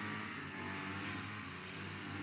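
Small engine of a brush cutter running steadily, a faint even hum with no change in speed.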